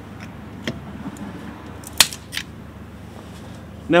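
A 3D-printed PLA socket on a car's lug nut clicking under strain as it is turned, with a loud sharp snap about two seconds in and a smaller click just after.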